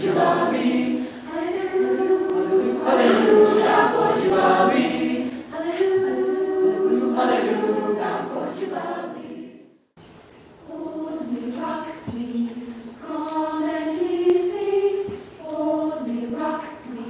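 Mixed high school choir singing sustained chords under a conductor. The singing breaks off for a moment about ten seconds in, then resumes more softly.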